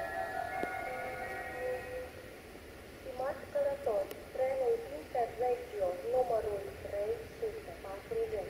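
Railway station public-address chime, several held tones that end about two seconds in, followed from about three seconds in by a voice speaking over the station loudspeakers.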